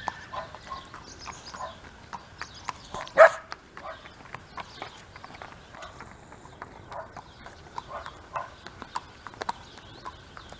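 A horse cantering on a sand arena, its hoofbeats heard as faint, irregular soft ticks, with a single short shout of "hey" urging it on about three seconds in.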